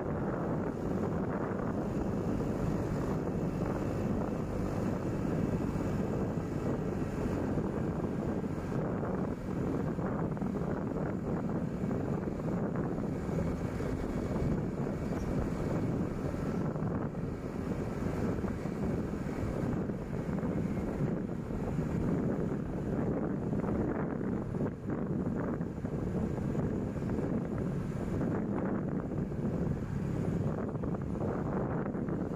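Steady engine and road rumble of the vehicle carrying the camera as it drives along a paved road, with some wind noise on the microphone.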